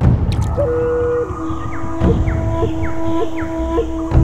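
Channel logo sting: held electronic tones that step down once, then carry short pitch blips and falling chirps about twice a second, over a low rumble, opening with a couple of clicks.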